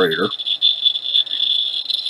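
Rad Alert 50 Geiger counter's piezo beeper chirping rapidly and unevenly at a high pitch, each chirp a count from a radioactive test source held to its tube. The tail of a spoken word is heard briefly at the start.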